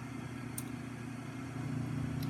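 Steady low machine hum with a faint hiss, and a light click about half a second in.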